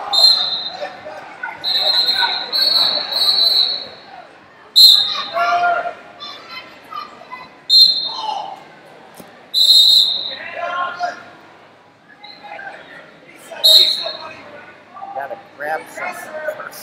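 Voices shouting in a large echoing sports hall, with about six short, shrill, steady high-pitched squeals cutting through at intervals.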